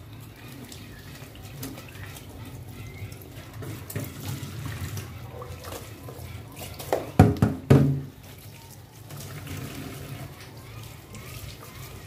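Kitchen tap running into an aluminium pan held in a stainless steel sink as the pan is rinsed and scrubbed under the stream. Two loud knocks come about seven seconds in.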